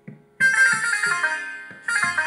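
Instrumental interlude of a devotional kirtan in dhamar taal: soft pakhawaj drum strokes, then a bright, ringing melody phrase that comes in loud about half a second in, fades, and starts again near the end.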